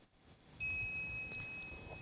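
A single chime struck about half a second in, ringing on with one clear steady tone while its higher overtones die away first. It is the cue sound that marks an additional note to the text.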